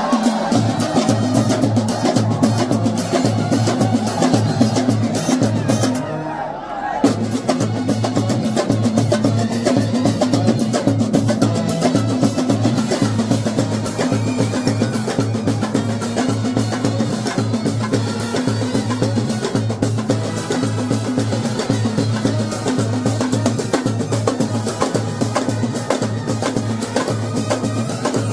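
Kerala street brass band playing a film song: trumpets and other brass over bass drums and side drums at a fast, steady beat. About six seconds in, the drums and upper sound drop out for about a second, then the band comes back in together on a loud hit.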